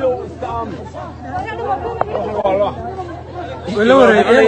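People talking over one another: overlapping chatter of several voices, with one voice coming in louder near the end.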